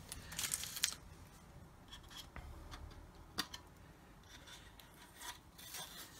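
Masking tape being lifted and peeled off a painted plastic model kit, with faint rustling and scratching of tape and tool on the plastic and a sharp click about three and a half seconds in.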